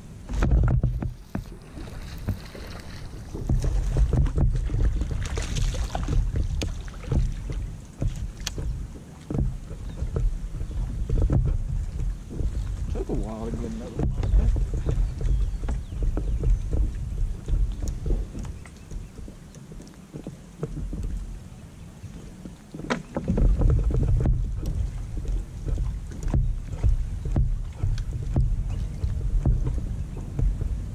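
Gusty wind buffeting the microphone as a low rumble that surges and eases, with scattered small clicks and knocks of fishing tackle being handled on a kayak.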